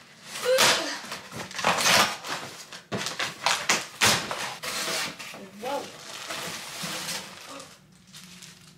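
Packing tape ripped off a cardboard shipping box in several sharp pulls, then the box flaps pulled open and plastic wrapping rustling near the end.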